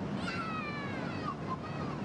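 A single high-pitched, whining cry that slides downward in pitch for about a second and a half, over a low steady hum.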